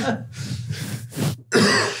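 Stifled, breathy laughter from men at the microphones, in short gusts, with a louder burst about one and a half seconds in.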